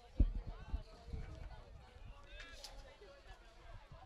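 A soccer goal kick: a single sharp thud of boot on ball just after the start, followed by a lighter knock, over faint voices from players and spectators.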